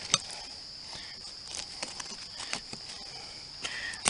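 Faint scrapes and clicks of small homemade metal ginseng diggers loosening soil and leaf litter around a plant, over a steady, high-pitched insect drone.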